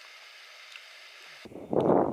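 Faint steady hiss, then about one and a half seconds in a sudden loud rumble of wind buffeting the microphone.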